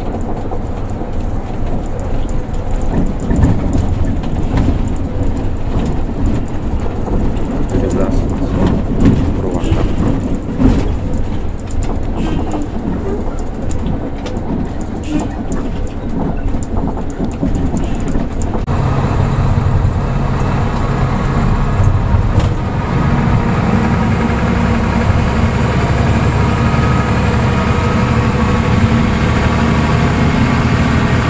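Cabin sound of a Hino RK diesel coach on the move: road and engine noise with scattered knocks and rattles. About two-thirds of the way through it changes to a steady engine drone.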